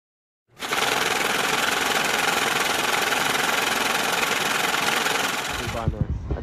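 A loud, harsh rattling noise, an added intro sound effect: it starts abruptly about half a second in, holds steady, and tails off just before the end.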